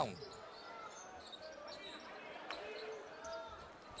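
A basketball being dribbled on a hardwood court, with faint voices from the crowd in the arena; one bounce stands out about two and a half seconds in.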